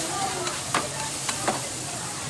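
Vegetables sizzling on a hot iron griddle as two metal spatulas toss them, with three sharp clacks of the spatulas in the second half.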